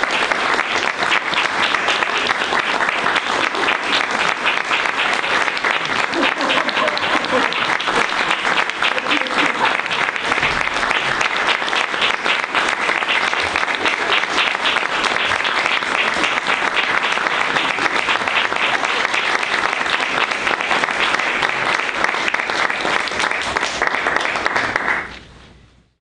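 Audience applause: dense, steady clapping at a constant level that dies away quickly about a second before the end.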